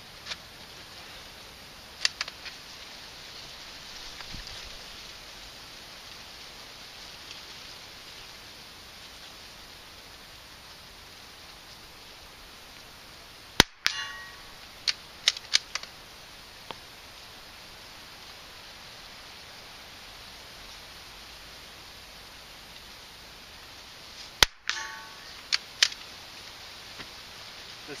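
.22 LR rifle fired twice with CCI standard-velocity ammunition, the two sharp cracks about eleven seconds apart. Each shot is followed by a few quick clicks from the rifle's action, over a steady rustle of wind through dry corn stalks.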